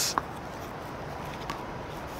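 Low steady background hiss with a short click just after the start and a faint tick about a second and a half in.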